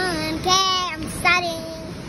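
A young girl's voice singing out three long, held sing-song notes, about half a second each, close to the microphone.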